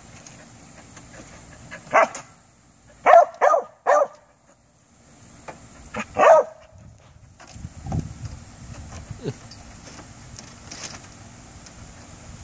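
A small terrier barking in short sharp bursts: one bark, then three quick barks, then one or two more, at a lizard hidden in a pile of poles and tarp. Softer low knocks follow near the end.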